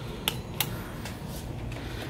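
Two sharp clicks about a third of a second apart, near the start, from a wall push-button beside the door being pressed, over a low steady background.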